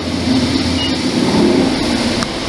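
Steady engine and road noise heard from inside a van's cab while it is being driven.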